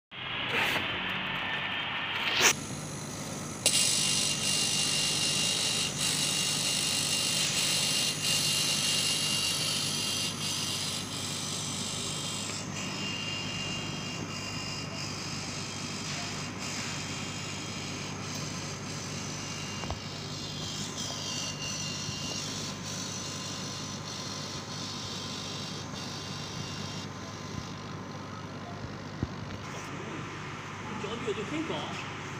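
Laser cutting machine at work cutting an acrylic sheet: a steady machine hum with an airy hiss on top. A sharp click comes about two and a half seconds in and another about a second later, when the hiss grows loud; the hiss eases off about twelve seconds in.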